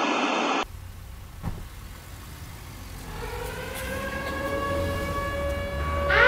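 A short burst of TV-static hiss used as an edit transition, lasting about half a second. After it comes a low rumble with a single click, then a steady tone with overtones that fades in over the last three seconds and grows louder.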